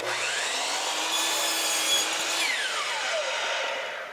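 DeWalt miter saw spinning up with a rising whine, its blade cutting through a piece of crown molding for about a second and a half, then winding down with a falling whine.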